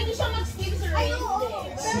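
Several voices talking at once, some of them high-pitched, over background music with a steady low hum underneath.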